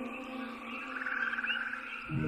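A hushed passage of a pop song: soft held synth tones with a faint wavering high line and no bass. Bass and plucked notes come back in at the very end.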